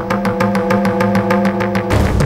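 Dramatic background music: a held chord over a fast, steady pulse.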